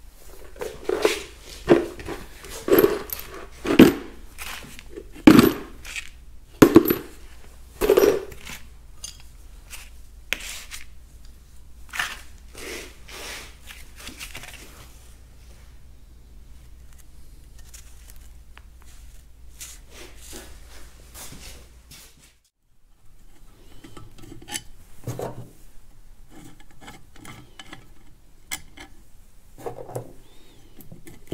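Metal bolts, tools and parts clinking and clanking as they are handled on a wooden workbench. About eight sharp, loud clanks come in the first eight seconds, followed by lighter, scattered clicks and rattles.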